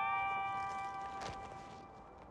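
A single bell-like ding, several clear tones sounding together, fading slowly away. There is a faint tap about a second in.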